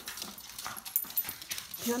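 A small fluffy dog moving about on a hard floor, its claws making a few light, scattered clicks and taps.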